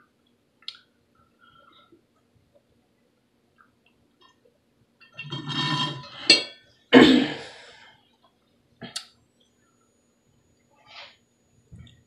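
Slurping and gurgling through a drinking straw as the last of the water is sucked from the bottom of a tumbler, about five seconds in. It is followed a second later by a loud breathy burst, then a couple of faint clicks.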